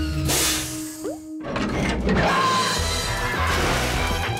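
Cartoon background music with sound effects: a loud whoosh just after the start that breaks off abruptly about a second and a half in, then music over a rushing hiss.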